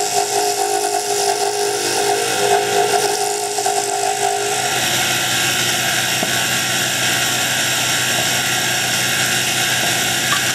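Wood lathe running steadily with a dart barrel spinning while sandpaper is held against it: a constant hiss with a faint whine that stops about halfway, when the sandpaper comes off and the lathe runs on alone.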